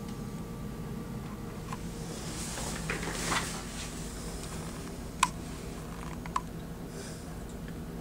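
Steady low hum of a powered-on Alma Harmony laser console running, with a soft rustle about three seconds in and two small clicks later on.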